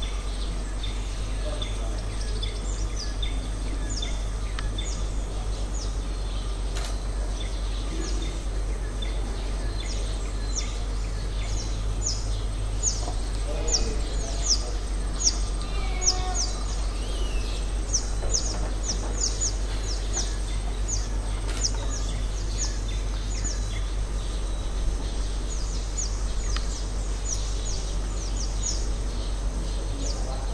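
A bird calling in a long series of short, high chirps, each falling in pitch, two or three a second and coming thicker after about ten seconds, over a steady low rumble.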